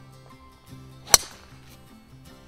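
A golf driver striking a teed ball: one sharp crack about a second in, over background music.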